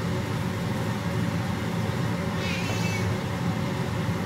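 Rolled oats being stirred and toasted in butter in a nonstick frying pan with a spatula, over a steady low hum.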